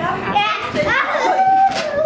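Young children's voices calling out and shrieking in play, high-pitched and wordless, with one longer held cry in the second half.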